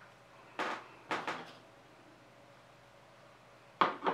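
A few short knocks and scrapes against a quiet background: two about half a second apart around the first second, and another sharp one near the end.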